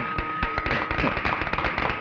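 A small group clapping, with quick irregular claps packed close together.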